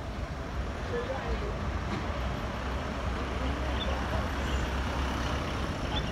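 A motor vehicle's engine idling with a steady low rumble, under faint, indistinct voices from the street.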